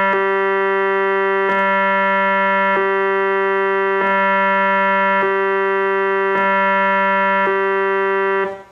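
Hammond Solovox, a 1940s vacuum-tube monophonic keyboard, sounding one held note as a steady tone rich in overtones. A brief click about every second and a quarter, with a slight change in tone each time, as the mute circuit that cancels harmonics is switched off and on.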